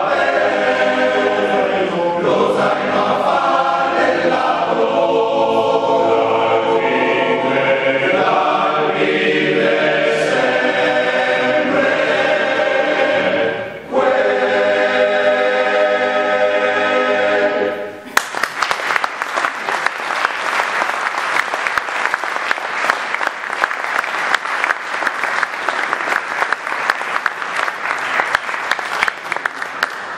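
Male Alpini choir singing unaccompanied in close harmony, with a brief break about 14 s in before a final phrase. The song ends about 18 s in and the audience breaks into applause that lasts to the end.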